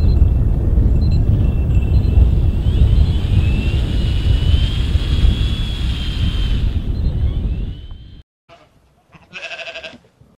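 Strong wind buffeting the microphone, with a thin high whistle from the wind that slowly rises and falls in pitch: the wind song. It cuts off about eight seconds in, and near the end a short sheep bleat sounds.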